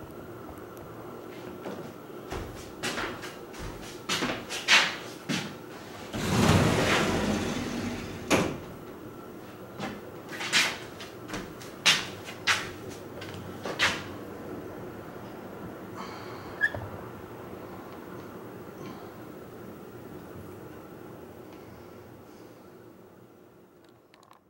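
Handling noise: a series of sharp knocks and clicks with a longer scraping rustle about six seconds in, as the camera is moved about and set down.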